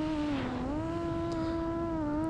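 FPV quadcopter's brushless motors and 6-inch two-blade props whining, heard from the onboard camera. The pitch dips about half a second in, then rises again and holds, following small throttle adjustments.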